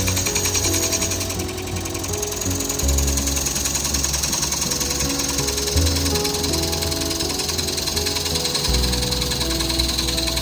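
Background music with held notes and a bass line that changes every few seconds, over the rapid, steady chatter of a gouge cutting the inside of a bowl spinning on a wood lathe.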